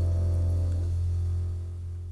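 Flute, piano, double bass and drums of a jazz quartet letting the final chord of a piece ring out. A deep low note is held under fading upper tones, and the whole chord dies away near the end.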